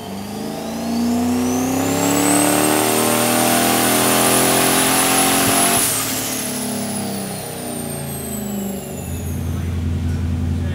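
Turbocharged Dodge 440 big-block V8 making a pull on a chassis dyno: the revs climb steadily for about six seconds with a high whine rising alongside, then the throttle closes and the engine winds down, settling to idle near the end.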